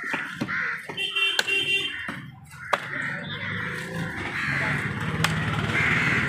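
A large knife cutting into a big trevally (paarai) on a wooden chopping block, with three sharp knocks of the blade, over a steady background hubbub.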